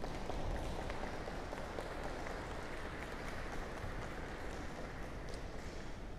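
Audience applauding in a large hall, an even patter of clapping at moderate level.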